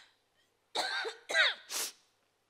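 A woman coughing and clearing her throat into a handheld microphone: three short bursts in quick succession, starting about three-quarters of a second in.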